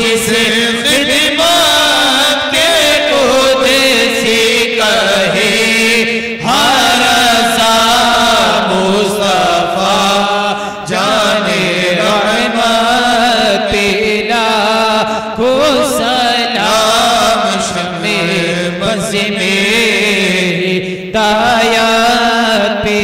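Men's voices chanting a devotional Islamic salaam through microphones, in long, drawn-out, wavering phrases with short pauses for breath between them.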